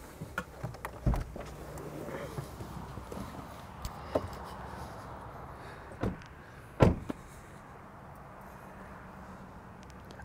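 A car door being handled: a low knock about a second in, then a couple of sharp knocks around six to seven seconds in, the loudest one the door of a Stepway hatchback being shut, over a faint steady outdoor hiss.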